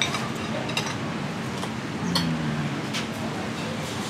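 Metal cutlery clinking lightly against plates a few times as people eat at a table, over steady background noise. About two seconds in there is a short low hummed sound from a voice.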